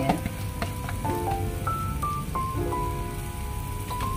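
Batter and long beans frying in a pan, a steady sizzle, under background music with a slow melody of held notes.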